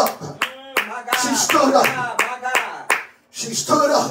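A few sharp hand claps at uneven intervals, mixed with a raised voice during a sermon.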